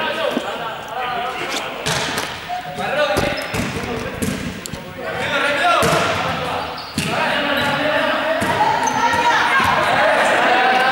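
Several thumps of a large inflatable exercise ball being kicked and struck across a sports-hall floor, ringing in the hall's echo, under a group of voices calling out.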